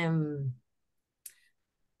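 A woman's voice holding a hesitant, drawn-out 'é…' that fades out about half a second in, then quiet broken by one short, faint click a little past one second.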